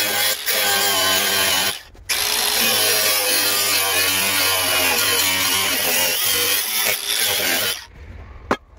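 DeWalt cordless angle grinder with an abrasive cut-off wheel cutting through the steel body of an old diamond saw blade: loud grinding over the motor's whine under load. The cut breaks off briefly about two seconds in, then runs on and stops just before the end.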